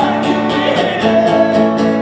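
A man singing over a strummed acoustic guitar, played live.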